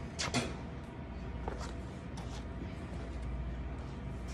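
Footsteps of sneakers on a concrete garage floor and mat: a sharp scuff or knock about a quarter second in, then a few fainter taps, over a steady low hum.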